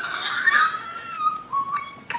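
A woman's long, high-pitched squeal of excitement, sliding down and then held with small wobbles.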